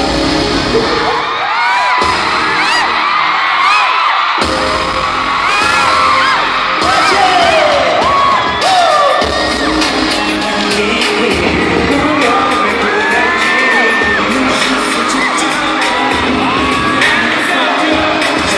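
An arena crowd of fans screaming and cheering, many high voices rising and falling over one another, over loud pop music from the concert sound system. About a second in, the music's bass drops away for roughly three seconds, then comes back.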